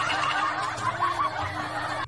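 Recorded laughter played through a phone's small speaker by the Google voice assistant in answer to a request to laugh; it stops suddenly at the end.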